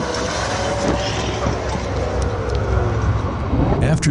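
A vehicle's engine running hard as it is driven fast over rough dirt, with a steady rumble and noise of the ride, and people's voices over it.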